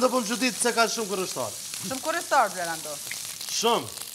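Indistinct, muffled voices talking over a steady hiss.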